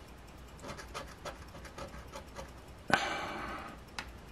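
A person breathes out sharply, a sudden breathy sound about three seconds in that fades over a second. Before it there are only faint small ticks.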